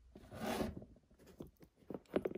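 Faint handling noise: a short rasp about half a second in, then light scattered clicks as fingers take hold of the sneaker's metal Jumpman hang tag on its ball chain.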